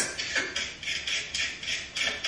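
Raw carrot being shaved with a handheld veggie slicer: a quick run of crisp slicing strokes, about two or three a second.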